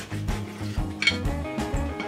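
Knife and fork working against a plate while cutting steak, with one sharp clink about a second in, over steady background guitar music.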